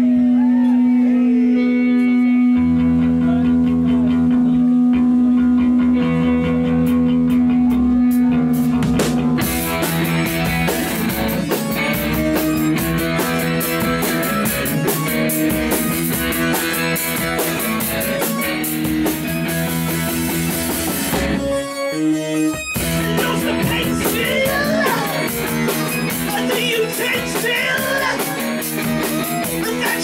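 Live punk band starting a song: one held note alone, a bass line joining after about two seconds, and the full band with drums and crashing cymbals coming in about nine seconds in. The band stops dead for about a second near the twenty-two-second mark, then starts again.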